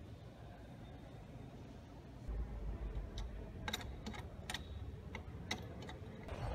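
Combination dial of an old iron safe being turned by hand, giving a string of about eight irregular sharp clicks over a low handling rumble.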